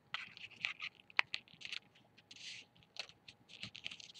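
Paper being folded and creased by hand: faint crinkles and scratches, with one sharp crack a little over a second in.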